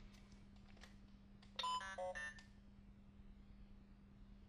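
Handheld electronic learning toy playing a short electronic jingle, quick beeping notes stepping in pitch in two brief phrases, about a second and a half in and lasting under a second. This is typical of the toy being switched on.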